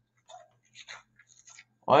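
A few faint, short rustles and clicks over a faint low hum; a man starts speaking loudly right at the end.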